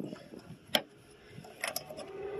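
Small clicks of a bolt with a metal washer and plastic knob being slid into the plastic channel of a roof rail: one sharp click just before a second in, then a few faint ticks near the end.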